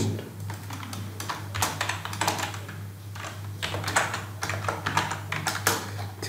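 Typing on a computer keyboard: an irregular run of keystroke clicks entering a folder name, over a steady low hum.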